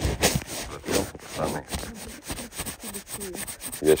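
Scratchy rubbing right at the microphone as a camera lens is wiped clean, in quick irregular strokes.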